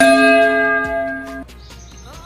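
A single bell chime sound effect: one sudden ring of several steady bell tones that stops abruptly about a second and a half in.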